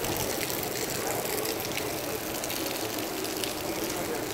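Steady rushing water noise, with scattered small ticks.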